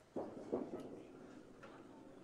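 Quiet bowling-alley room tone with a faint murmur of voices near the start.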